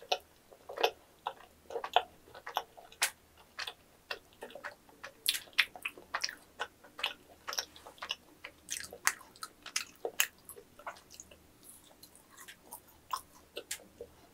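A person chewing a mouthful of chewy yakgwa (Korean honey-fried pastry) with vanilla ice cream. The mouth makes irregular, sharp clicking sounds, about two to four a second.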